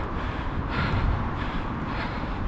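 Wind rumbling on a chest-mounted action camera's microphone, with a faint distant shout about a second in.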